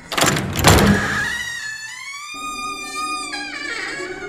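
A loud hit with a rushing sweep in the first second, then a long drawn creak of a door swinging open. The creak rises slightly in pitch, then holds and fades near the end.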